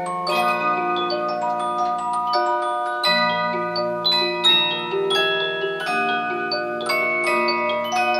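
Large Symphonion disc musical box playing a tune from a punched metal disc. Its steel comb teeth are plucked in a steady stream of bright, ringing notes and chords over sustained bass notes.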